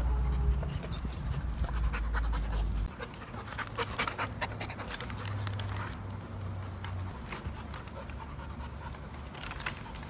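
A bully-breed puppy panting hard, in quick, uneven breaths, over a low rumble during the first three seconds.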